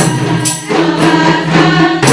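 Women's rebana qosidah ensemble: a group of female voices singing an Islamic song together, accompanied by rebana frame drums. Two drum strokes in the first half-second, then held sung notes.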